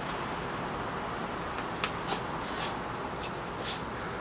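Light clicks and scrapes of small carved wooden box pieces being handled and fitted together, a few short ticks in the second half, over a steady background hiss.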